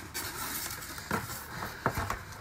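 Hands opening a cardboard box and its packing, with rustling and scraping and two short knocks in the second half.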